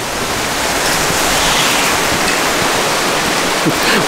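Heavy rain falling, a steady, even hiss of water.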